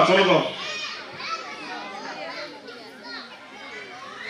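Children chattering and calling in the background, many voices overlapping. A man's amplified speech stops about half a second in.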